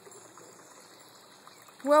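Faint, steady outdoor background noise with no distinct event, then a woman's voice starts near the end.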